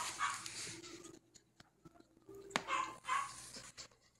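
Japanese Chin puppy giving small barks in two short bouts, one just after the start and another about two and a half seconds in.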